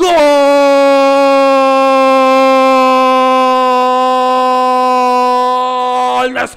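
Male football commentator's goal call: one long drawn-out "gol" shout held on a single steady pitch for about six seconds, started on a fresh breath after a brief gap. It marks a goal just scored.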